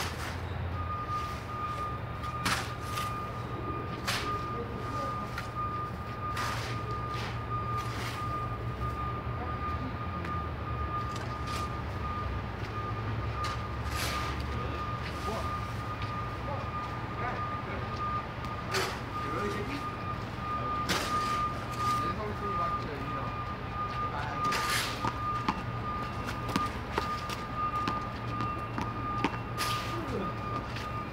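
Snow shovel scraping and knocking on the paved court in irregular strokes, over a steady low traffic rumble and a continuous high-pitched tone.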